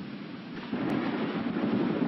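Thunder rumbling with rain, getting louder about three-quarters of a second in.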